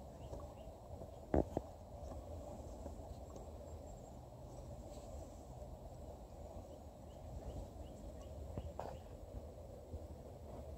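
Quiet handling of small metal parts as fingers thread a small retaining screw into a tight spot on an engine, with two light clicks about a second and a half in over low room hum.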